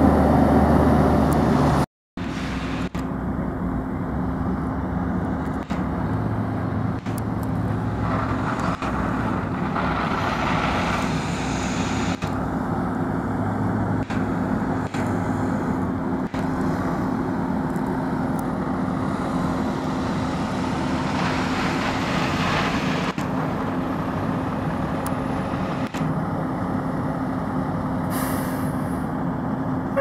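A fire tanker's diesel engine passing close by, cut off suddenly about two seconds in; then the steady drone of fire apparatus engines running at the scene, with one constant humming tone.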